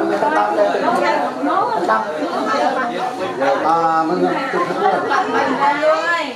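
Several people talking at once, an overlapping murmur of conversation with no other distinct sound.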